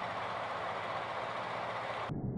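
Steady outdoor background noise at a driving range, an even hiss with no club strikes in it.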